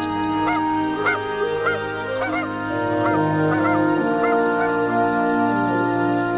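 Gentle background music with a string of short bird calls over it, each rising and falling in pitch, about two a second, thinning out near the end.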